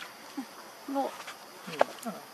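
A few brief pitched vocal sounds over faint background hiss, the loudest and sharpest near the end.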